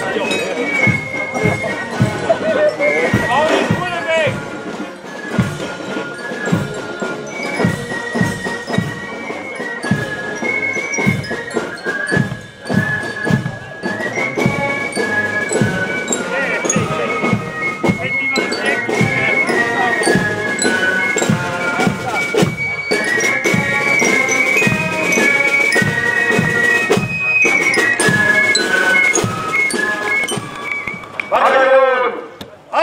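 A German marching band (Spielmannszug) of high flutes, snare drums and marching lyres playing a march: a high, sustained melody over a steady drum beat.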